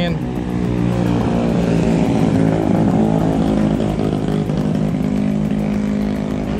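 A motorcycle engine running steadily at idle, with faint voices over it.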